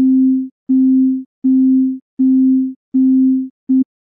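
A synthesizer's sine-wave tone playing the same low note over and over, about six evenly spaced notes each a little over half a second long, the last cut short near the end. It runs through Ableton's Compressor at an infinite ratio with 10 ms of lookahead, which keeps the compressor from adding a click at the start of each note.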